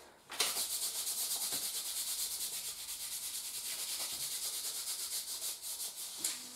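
Kinesiology tape being rubbed down over the skin with its backing paper in quick back-and-forth strokes, about six a second, starting about half a second in; the rubbing presses the tape on so that it sticks.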